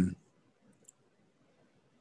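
A man's drawn-out 'um' trailing off, then near silence with two faint, short clicks just under a second in.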